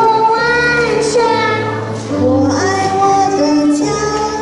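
A young girl singing a song into a microphone, joined by a woman's voice, over instrumental backing music with steady held low notes.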